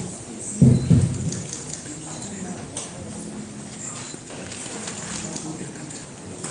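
Courtroom hubbub of low voices and small clicks and shuffles, with a loud deep double thump just under a second in.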